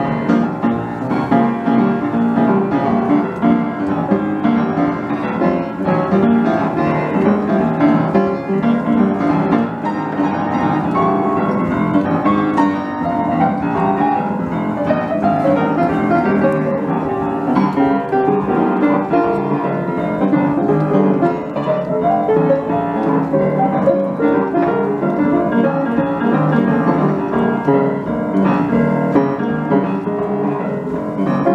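Piano played continuously in a busy, fast flow of notes, mostly in the middle and lower-middle register.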